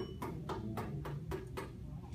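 A hand lightly tapping a basketball spinning on a fingertip to keep it turning: short, even taps at about four a second, over a steady low room hum.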